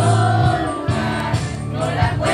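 Choir singing Christian music over steady bass notes.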